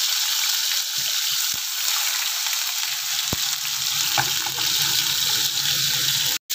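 Paneer cubes sizzling as they fry in hot oil in a pan: a steady hiss with a few faint pops.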